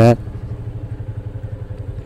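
Motorcycle engine running steadily at low revs, with an even, rapid putter.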